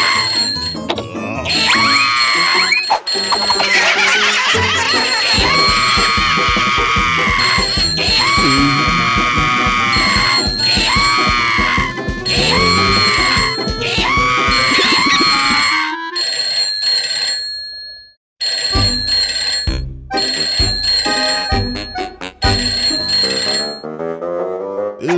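Cartoon soundtrack music with a high, wavering scream repeated over it many times during the first two-thirds. The music stops abruptly, goes silent for a moment, and comes back with a thudding beat.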